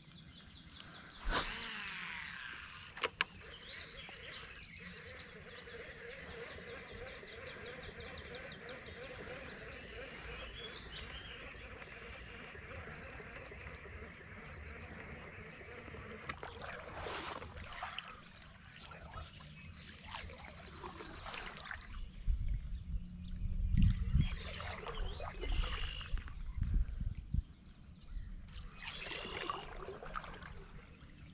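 A baitcasting reel: a cast with the line whizzing off the spool and a click about three seconds in, then a steady whirring reel retrieve. Near the end, water splashes and churns beside the kayak as the rod tip is worked through the surface.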